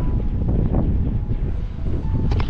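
Wind buffeting the microphone: a loud, uneven rumble.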